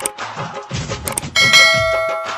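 Background music with a beat, over which come a few sharp clicks and then a bell-like ding about one and a half seconds in that rings on and slowly fades: the click-and-bell sound effect of a subscribe-button animation.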